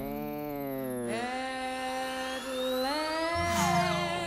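Electronic robot vocalisations: drawn-out synthetic tones that slide up and down in pitch, with a thin rising whine in the middle and a falling slide near the end.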